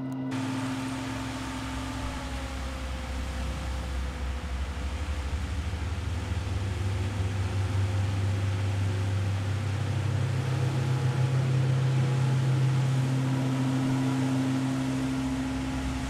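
Engines of a military truck and jeep driving, a low steady rumble that grows gradually louder.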